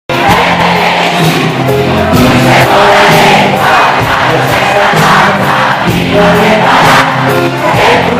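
Live rock band playing loud, with drum and cymbal hits and a man singing into a microphone, and crowd voices mixed in.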